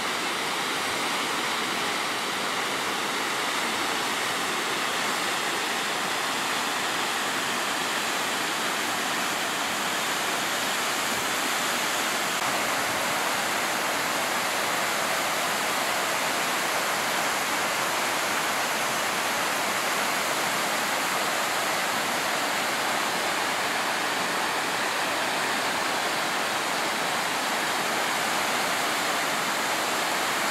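Water from an overflowing dam rushing down a concrete spillway chute and churning into the plunge pool at its foot: a steady, unbroken rush of white water.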